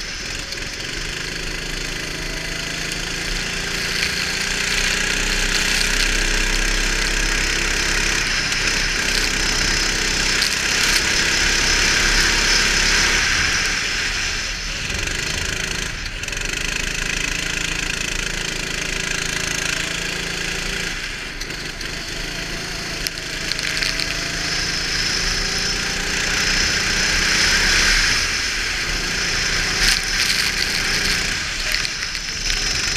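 Go-kart engine revving up along the straights and dropping back into the corners, about four times over, under a steady hiss of wind and spray from the wet track.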